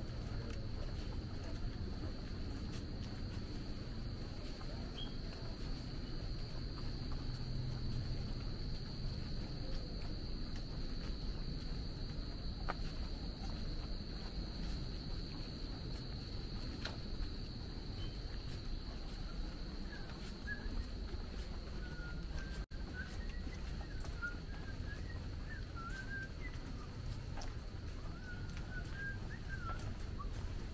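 A steady, high, unbroken insect drone in woodland. From a little past the middle, a bird chirps in quick, short, wavering notes, over a low background rumble.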